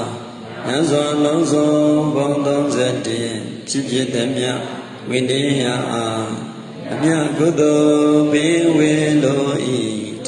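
A Buddhist monk chanting solo into a microphone, a single male voice in long drawn-out phrases with held notes.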